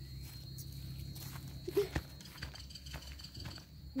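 A garden hose swung as a jump rope, slapping the grass, with feet landing on it: a few faint knocks, the sharpest about two seconds in, over a low steady hum.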